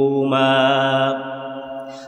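A man's voice chanting a Quranic verse in Arabic in a slow, melodic intonation: long held notes, the second phrase trailing off toward the end.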